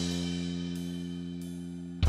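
Live rock band hitting a loud opening chord and letting it ring, slowly fading, with cymbals washing over it.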